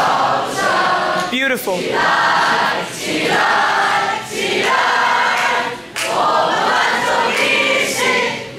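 A group of young people singing together in phrases, with short breaks between lines. About a second and a half in, a single voice rises and falls in pitch over the group.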